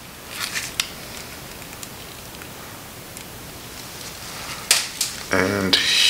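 Light metallic clicks and scrapes of a steel pick tool working an O-ring out around the oil pump in a motorcycle engine's cam chest. A cluster of small clicks comes about half a second in, and two sharper clicks come near the end.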